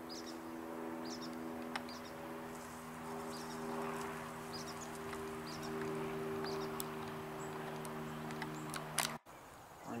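A steady mechanical hum with several held low pitches, which cuts off suddenly about nine seconds in.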